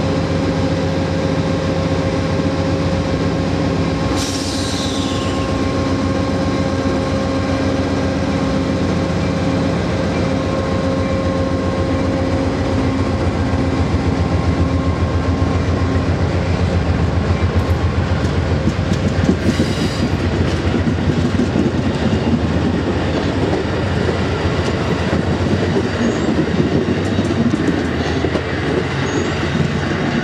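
Amtrak passenger cars starting to roll and picking up speed, wheels clicking over the rail joints in a steady rhythm that grows louder in the second half. A brief high falling squeal about four seconds in.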